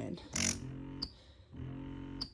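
Spectra S1 electric breast pump running at vacuum level 12, 50 cycles a minute: two humming suction strokes about 1.2 seconds apart, the first ending in a sharp click. The air port is closed off as if the tubes were fitted, which keeps it fairly quiet, "really not too terrible".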